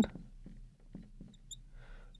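Marker pen writing on a glass lightboard: faint taps and a few brief high squeaks as letters are written.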